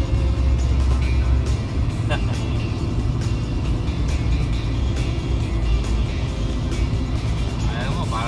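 Steady road and engine noise inside a car cabin at highway speed, with music playing over it.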